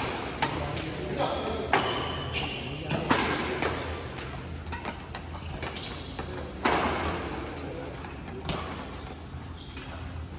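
Badminton rackets striking the shuttlecock in a doubles rally, sharp irregular hits a second or more apart, each with an echo from a large hall, alongside voices and shoe squeaks on the court floor.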